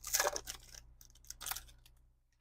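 Shiny foil wrapper of a trading-card pack crinkling and tearing as it is opened and the cards are pulled out, in short bursts right at the start and again about a second and a half in.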